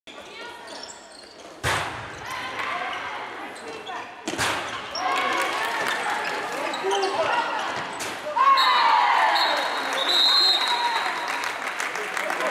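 A handball smacking on the court with two loud knocks a few seconds apart, among shouting players and spectators in an echoing sports hall. About eight and a half seconds in, the voices swell into a cheer, and a whistle blows for about two seconds.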